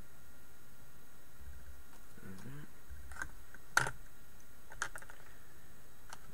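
A few sharp clicks and knocks, the loudest nearly four seconds in: mineral specimens being handled and set down on a wooden table.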